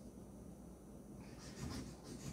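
A marker scribbling on paper in quick, repeated scratchy strokes, starting a little over a second in, as a drawing is coloured in.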